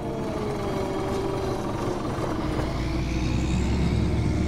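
Cartoon machine sound effect like a running engine: a steady noisy whirr, with a whine rising in pitch over the last two seconds and a low hum joining a little past halfway.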